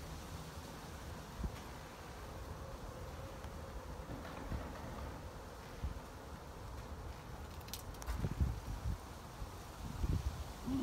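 Quiet outdoor background: a low rumble with a faint steady buzz, and a few soft bumps near the end.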